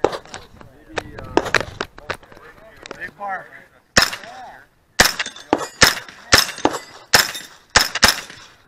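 Just Right Carbine 9mm pistol-calibre carbine firing a rapid string of shots from about four seconds in, many of them in quick pairs.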